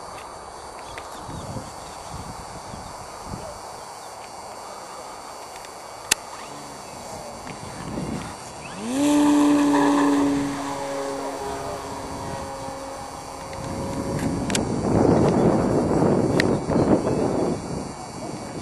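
Electric brushless motor and propeller of a Hyperion Katana F3A aerobatic model plane (Hyperion Z4020-14B motor) spooling up with a quick rising whine about nine seconds in, then holding a steady pitch through the take-off run. Near the end the whine gives way to a louder rushing noise as the model climbs away.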